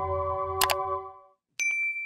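Outro music fading out, with a quick double click sound effect about half a second in. After a brief silence, a bright ding sound effect rings out near the end and holds one high tone.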